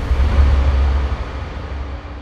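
Outdoor ambient noise dominated by a deep, steady rumble with a faint hiss above it, slowly fading toward the end.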